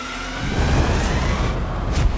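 Film sound effects of an aircraft in flight: a loud low roar of engine and rushing air swells in about half a second in, with a thin high tone rising slowly above it.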